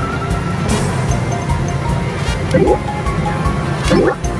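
Background music with a steady beat. A short rising swoop sounds about two and a half seconds in and again near the end.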